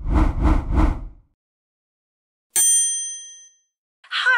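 Intro-animation sound effects: a short, deep three-beat hit in the first second, then about two and a half seconds in a bright bell-like ding that rings out over about a second.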